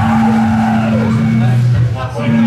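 Live metal band playing loud, heavily distorted electric guitar and bass holding low sustained notes, with a sound sliding down in pitch about halfway through.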